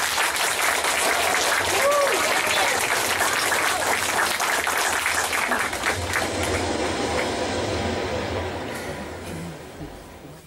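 Audience applauding after a song, the clapping thinning out and fading near the end.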